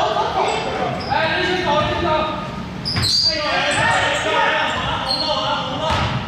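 Pickup basketball game in a gymnasium: players' voices calling out while a basketball is dribbled on the hardwood court, echoing in the large hall.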